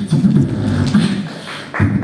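Beatboxing: vocal percussion with a steady beat of deep bass hits and hissing snare-like sounds between them, in a large hall.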